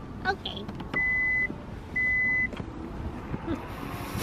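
Two steady, high electronic beeps, each about half a second long and one second apart, over a continuous low hum of traffic.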